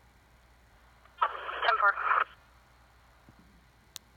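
Police radio traffic from a digital trunking scanner's speaker: a brief, tinny voice transmission about a second long, starting about a second in, over low hiss. A single click follows near the end.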